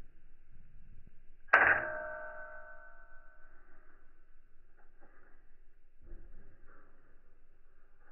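A single sharp metallic clang about a second and a half in that rings on several tones and fades away over about two seconds.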